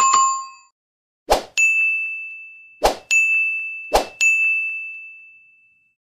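Bell-ding sound effects of an animated subscribe end screen: a short ding at the start, then three times a sharp click followed at once by a higher bell ding that rings out and fades, about a second or so apart, the last fading longest.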